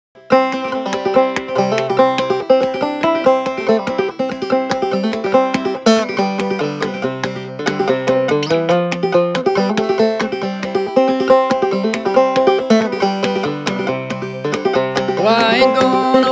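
Five-string banjo played clawhammer style: a solo instrumental run of plucked melody notes over a steady, even rhythm. A man's singing voice comes in near the end.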